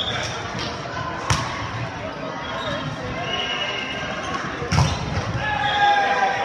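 Volleyball being hit during a rally: sharp smacks of hands on the ball, the loudest about a second in and again near five seconds, with players shouting calls between the hits.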